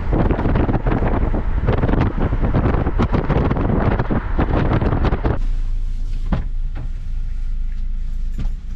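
A car on the road, with wind buffeting the microphone. About five seconds in the buffeting stops suddenly, leaving a steadier, quieter low hum of engine and road.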